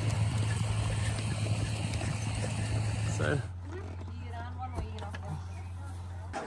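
Outdoor noise from riding on horseback: wind and rustle on the microphone with horses' hooves on a dirt track, over a steady low hum. About halfway in it cuts to a quieter scene with faint voices.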